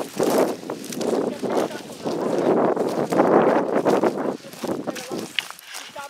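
Footsteps crunching and dry brush rustling against legs while walking through dry scrub, in an irregular run of noisy steps that eases off about four and a half seconds in.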